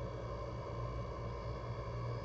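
Steady low electrical hum with faint hiss underneath: the recording's background noise between sentences.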